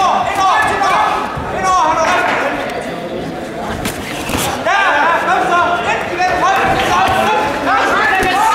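Several voices shouting, echoing in a large sports hall, with a sharp thud of an impact near the middle.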